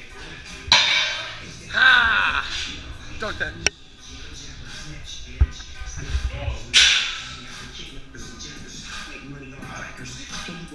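Music playing in a gym, with loud shouts from the lifters and a few dull thuds partway through.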